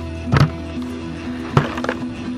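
Background music with two sharp knocks, about half a second in and again about a second and a half in, as a plastic bucket lid is pulled off and handled.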